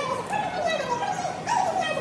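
A woman's voice through a handheld microphone and loudspeaker, high in pitch, in long gliding phrases.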